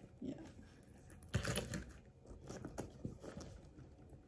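Handbag being handled: a soft knock about a second in, then a run of small clicks and rasps as the metal zipper of a faux-leather Steve Madden crossbody bag is pulled open.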